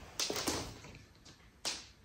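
A few short, sharp taps and clicks: a quick cluster just after the start and a single one later, with quiet in between.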